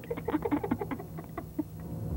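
Soft, choppy voice sounds in quick short bursts, like giggling or chattering under the breath.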